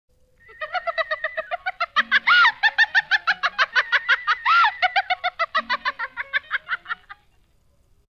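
Rapid, evenly spaced bird-like chirping, about eight chirps a second, with two longer swooping calls. It fades in and fades out before the end.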